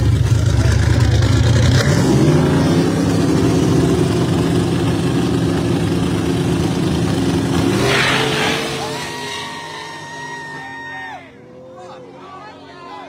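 Two street drag cars, a Pontiac Trans Am and a Ford Mustang, held at high revs at the start line. They launch about eight seconds in and pull away, their engine noise fading quickly into the distance.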